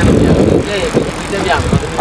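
Wind rumbling on the microphone of a moving rider's camera, with brief snatches of voices.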